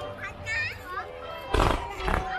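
A firework shell bursts with a single loud bang about one and a half seconds in. Children's high voices call out from the watching crowd around it.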